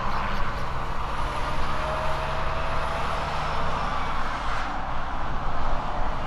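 Heavy diesel trucks passing at highway speed, with a steady engine drone under broad tyre noise.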